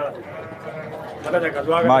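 A sheep bleats once during the first second. Then a man starts talking, near the end.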